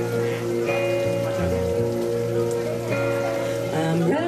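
Acoustic guitar and hollow-body electric bass playing an instrumental passage, chords ringing over bass notes that change every second or so.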